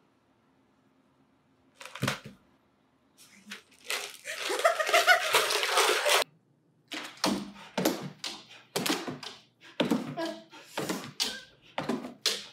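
A single hollow knock about two seconds in, fitting a clear plastic jar bumping as a cat pushes its head inside. It is followed by a person laughing hard in repeated bursts.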